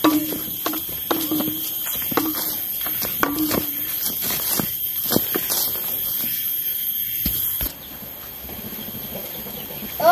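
Footsteps of someone walking on grass with a heavy sack on the shoulder, short sharp steps about two a second over a steady hiss. About three-quarters of the way through the steps give way to a quieter background.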